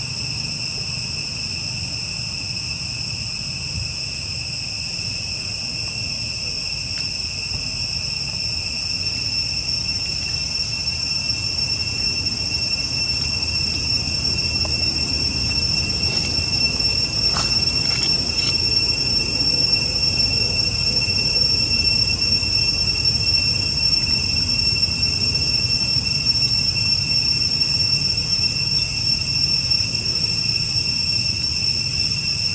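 Insects calling in a steady, unbroken high-pitched drone, with a low rumble underneath that grows louder through the second half.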